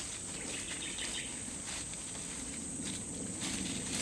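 A cow cropping grass, with faint tearing ticks now and then, over a steady high insect drone.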